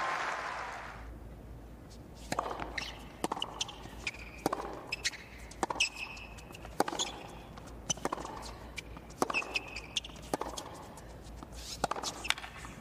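Tennis rally on a hard court: the ball struck by the rackets back and forth, one sharp pock about every second and a bit. A crowd murmur fades out in the first second or two.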